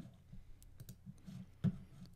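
A few faint clicks from a computer mouse used to select code and open another file, the sharpest about one and a half seconds in.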